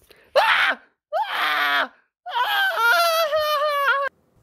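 A person wailing in a high, crying voice: three cries, two short ones and then a long, wavering one that breaks off at the end.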